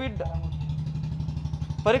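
A vehicle engine idling: a steady, low, evenly pulsing rumble.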